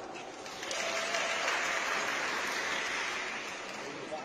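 Spectators clapping, starting about half a second in, building, then tapering off toward the end.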